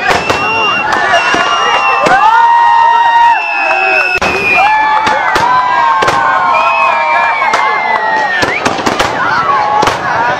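Aerial fireworks shells bursting overhead in repeated, irregular bangs, about one or two a second, over a crowd's continuous shouting and long held calls.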